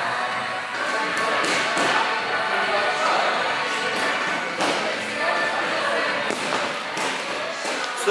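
Busy gym ambience: background music and people talking, with occasional sharp thuds and knocks.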